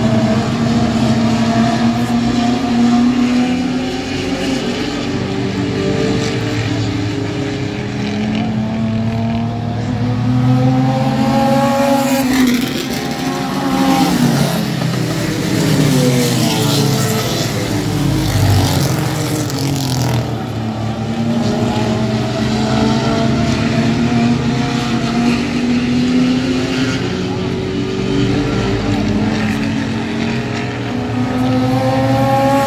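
Several short-track race cars' engines running hard around the oval together, their pitches rising and falling as they accelerate and pass by, with the loudest close passes about twelve seconds in and again near twenty seconds.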